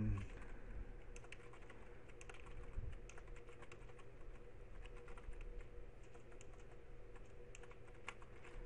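Computer keyboard being typed on: quick, irregular key clicks in short runs, faint, over a low steady hum.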